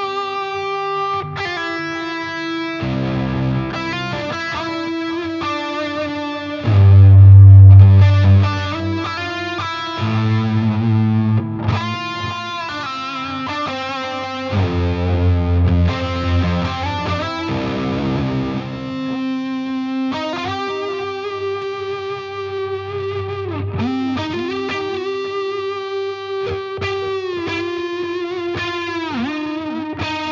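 Electric guitar played through a Victory Silverback amp head and Victory 2x12 cabinet. Heavy low chords ring out loudest around 7 s and again around 15 s, between lead lines of held notes and string bends that fill the second half.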